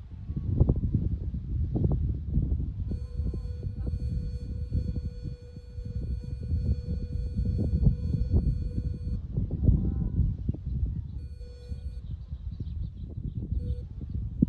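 Wind buffeting the microphone in uneven gusts. From about three seconds in, a steady electronic beep tone sounds for about six seconds, then returns briefly twice near the end.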